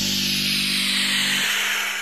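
The closing of a Bollywood film song: held low notes under a bright, hissing cymbal-like wash that slowly dims. It begins fading out near the end.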